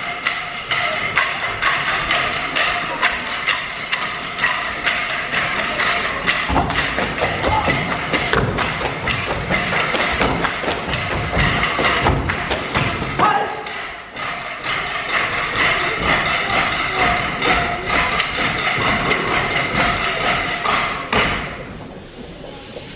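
Hungarian folk dancers' boots stamping and slapping on a wooden stage floor in a fast rhythm over live folk-band fiddle music. The music and stamping die away shortly before the end.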